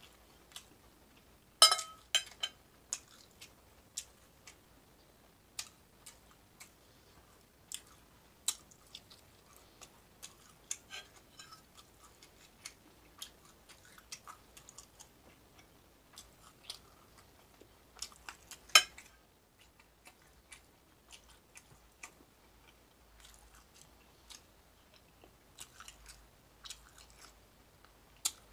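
A person eating close to the microphone, chewing bacon and a biscuit with wet mouth clicks and smacks scattered through. Two much louder sharp clicks stand out, about two seconds in and near nineteen seconds.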